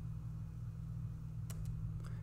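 A steady low hum, with two faint clicks close together about one and a half seconds in, like a computer mouse being clicked.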